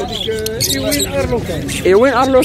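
People talking, with short high-pitched chirps from caged ornamental birds breaking in briefly under a second in.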